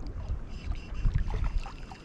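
Wind buffeting the microphone: a low, gusting rumble, with faint light ticks scattered through it.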